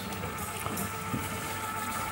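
Chocolate fountain running: a steady hum from its motor, with the melted chocolate pouring down over its tiers.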